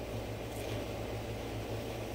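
Steady low hum with a faint hiss: background room noise.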